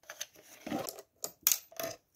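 Small plastic toy pieces clicking and knocking against the wood of a model horse stable as they are handled and moved, a few irregular sharp clicks.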